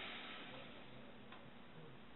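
Quiet room tone with a faint hiss and one faint click a little over a second in.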